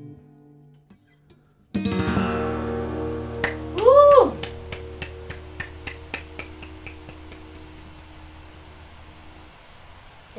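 An acoustic guitar chord is strummed a couple of seconds in and left ringing, slowly dying away. A voice gives a short rising-and-falling exclamation over it, followed by a run of hand claps at about three a second.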